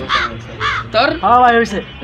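A bird calls twice in quick succession, two short harsh calls in the first second. A man's voice follows.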